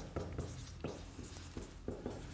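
Marker pen writing on a whiteboard: a few short, quiet strokes as letters are drawn.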